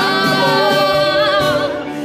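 Live worship music: men and women singing together in harmony over keyboard, with long held notes that take on vibrato in the second half.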